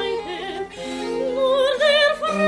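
Baroque chamber music on period instruments: a soprano sings with vibrato over sustained violin, cello and harpsichord, with a short break in the line just under a second in before the next phrase rises.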